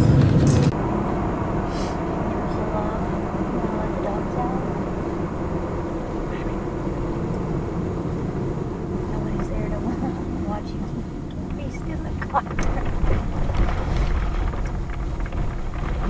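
Steady road and engine noise inside a moving car's cabin at highway speed, with faint low voices in the background. The first second is louder and drops suddenly to the steadier cabin drone.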